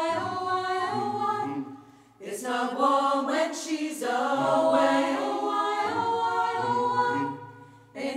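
Mixed choir of men and women singing unaccompanied, holding sustained chords over a low bass line. There are two phrases, with a short break about two seconds in and a fade near the end.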